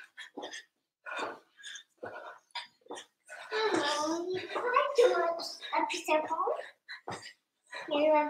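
A young girl's high voice talking for about three seconds, beginning a little before the middle, after a few short sharp sounds in the first seconds.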